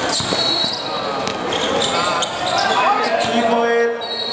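Live indoor basketball play: a ball dribbled on the court floor and sneakers squeaking, under the voices of players and spectators echoing in the hall.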